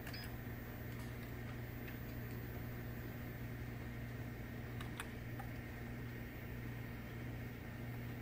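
Low steady hum of a Dell Precision T3500 workstation running as it boots, with a few faint clicks about five seconds in.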